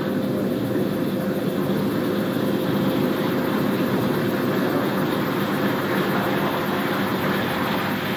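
Onboard audio from a Falcon 9 second stage in flight, near the end of its Merlin Vacuum engine burn: a steady noisy rumble with a steady hum underneath, carried through the vehicle's structure.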